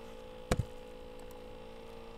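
Steady electrical mains hum with one sharp click about half a second in, typical of a computer mouse or key press.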